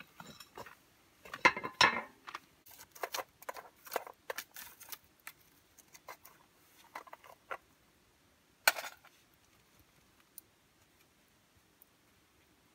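Scattered light clicks, knocks and clatter of small objects being handled, with louder clatters about two seconds in and near nine seconds.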